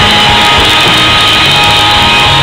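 Live rock band playing loudly, with electric guitar and drum kit.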